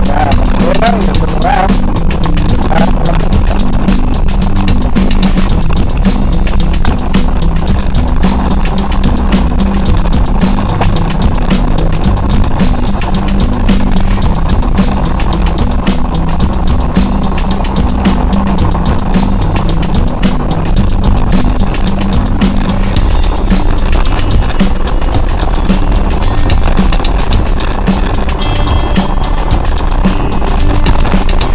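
Music playing over the steady rumble of a 4x4 driving a rough dirt track, with constant knocks and rattles from the bumpy ground.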